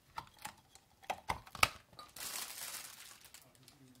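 A silicone stretch lid is peeled off a square ceramic dish and the dish is handled: a few sharp clicks and taps in the first two seconds, then about a second of crinkling rustle.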